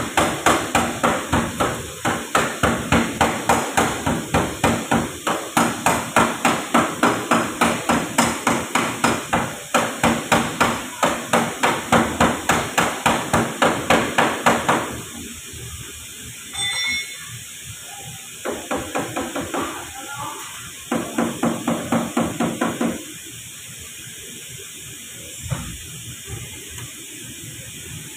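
Metal hammer blows on a car's sheet-metal body panel, fast and even at about four strikes a second. The blows stop about fifteen seconds in, then come back in two shorter runs.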